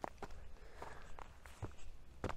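Footsteps on loose gravel and stony soil: several short, irregular steps.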